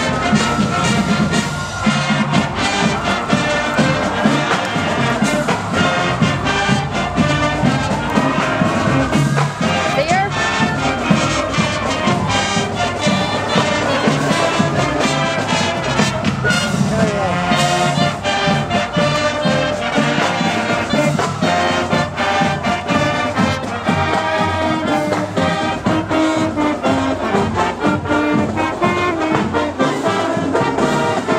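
Marching band playing with brass and drums. A rising-and-falling pitch swoop repeats through the first half.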